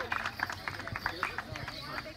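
Audience applause thinning out and dying away, a few last claps near the end, with people talking.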